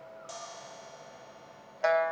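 Pipa music: a plucked pipa note rings on while a soft, high metallic shimmer from the percussion comes in. Near the end a new pipa note is plucked sharply, the loudest sound.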